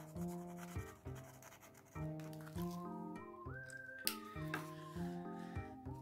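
Background music of sustained chords with a melody note that slides up and back down, and a single sharp click about four seconds in.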